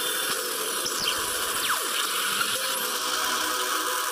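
The lightning intro's sound-effect track playing back: a steady, dense electric hiss-and-buzz with a few quick sweeping tones, one falling and others rising.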